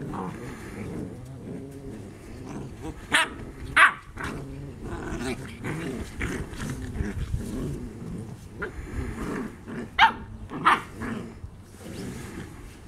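Black Russian Terrier puppies play-growling as they wrestle, with four sharp high-pitched barks, two close together about three seconds in and two more about ten seconds in.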